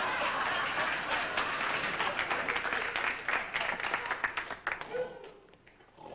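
Studio audience laughing and applauding, the clapping thinning out and dying away about five seconds in.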